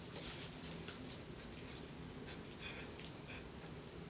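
A dog gnawing on a chew, heard as faint scattered clicks. A brief faint high whine comes about two and a half seconds in.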